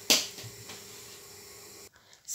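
A single sharp click just after the start, with a few faint ticks after it, then a faint steady hum of room tone that cuts off near the end.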